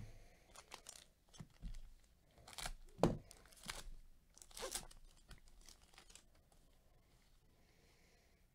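Foil wrapper of a 2020 Bowman Chrome trading-card pack being torn open and crinkled by gloved hands. It comes as a run of short rips and crinkles over about five seconds, loudest about three seconds in.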